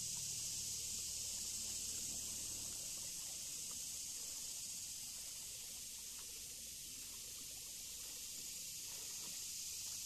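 Steady high-pitched hiss of outdoor river ambience from a kayak drifting on a calm spring-fed river. A faint low hum fades out about three seconds in.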